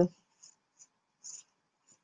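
A few faint, brief scratchy rustles, a person handling small objects.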